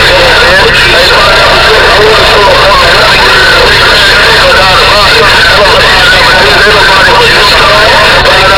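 CB radio putting out a loud, distorted voice transmission, the speech too garbled for words to come through, over a steady low hum.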